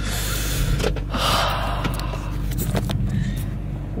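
A person breathing out hard twice in the first second and a half, over the steady low hum of a car idling.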